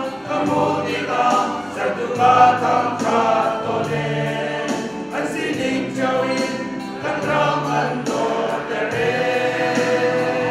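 Men's choir singing a hymn in parts, several voices sounding together from bass up, on held notes that change about once a second.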